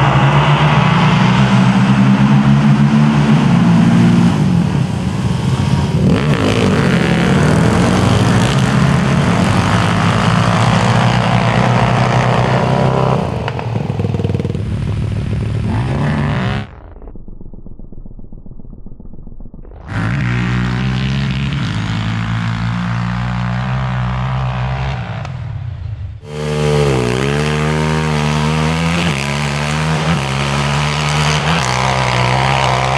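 Sport quad (ATV) engines with aftermarket exhausts running at full throttle as they drag race up a sand hill, several machines at once. About 17 seconds in the sound briefly drops to a muffled low rumble. Near the end a single quad revs sharply and launches.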